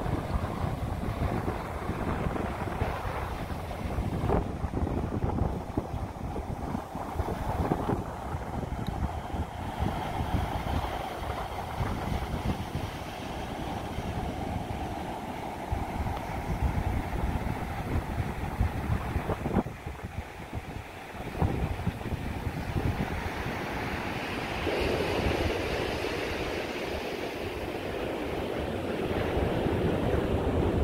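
Ocean surf breaking and washing up the beach, with wind buffeting the microphone in uneven gusts.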